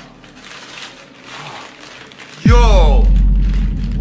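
Newspaper crinkling as an object is unwrapped, then about two and a half seconds in a sudden loud, deep drone starts and holds, with a falling voice-like sweep over its onset.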